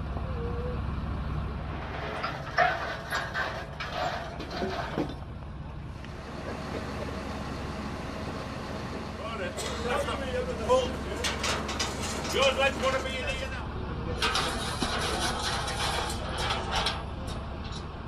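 A heavy diesel engine running steadily in the background, with people talking and scattered clicks and knocks.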